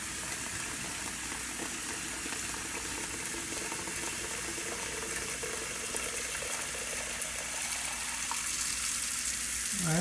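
Kitchen faucet running steadily into a sink basin while the water drains freely down the plughole: the drain line is clear and draining faster than the tap fills it.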